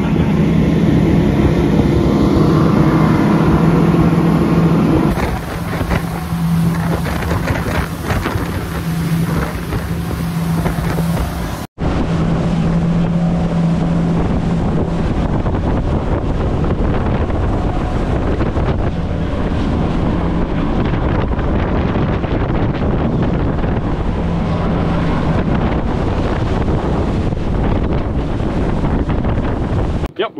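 Center-console fishing boat running at speed: a steady engine drone under the rush of wind on the microphone and water from the wake. The sound drops out for an instant about twelve seconds in.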